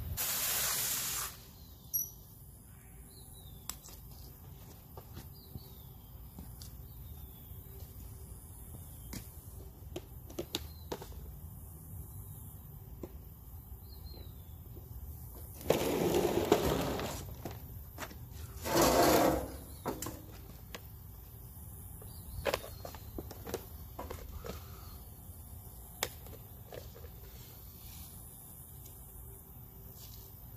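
Quiet outdoor background with scattered light clicks. A burst of hiss comes at the start, and two louder bursts of rustling hiss, each a second or so long, come a little past halfway.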